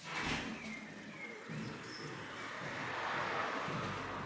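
Birds chirping, with a short noisy burst just after the start and a steady hiss of open-air ambience that swells slightly towards the end.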